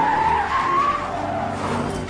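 A race car's tyres squealing as it skids sideways through dirt: one long wavering squeal that fades out after about a second and a half.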